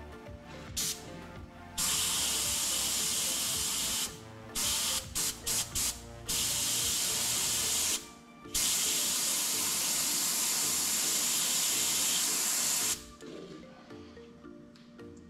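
Airbrush spraying paint, hissing in bursts: a long spray about two seconds in, a run of short quick bursts around five seconds, then two longer sprays that stop about a second before the end.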